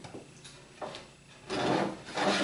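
A wooden board scraping as it is slid out and picked up, a short noisy rub in the last half second, with a faint knock about a second before it.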